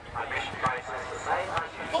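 Spectators' voices talking on a football terrace, with two brief knocks, one a little over half a second in and one about one and a half seconds in.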